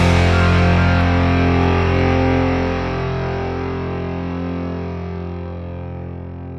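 A distorted electric guitar chord held and ringing, slowly fading out, its high end dying away first.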